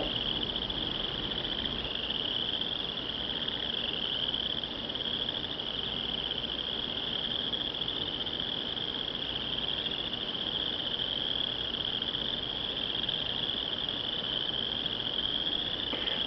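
A steady, high-pitched chorus of insects, one continuous trill with a slight pulsing texture that neither starts nor stops.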